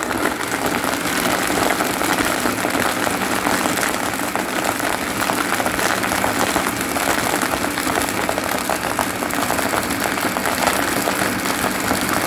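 Countertop blender running steadily at speed, blending a shake of milk, banana and oats.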